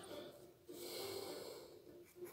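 A man's faint breath through the nose, close to the microphone, lasting about a second.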